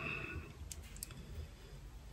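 Quiet room with a low steady hum and two faint clicks about a second in.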